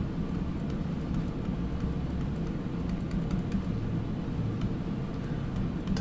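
Faint, scattered ticks of a stylus writing on a tablet screen over a steady low hum.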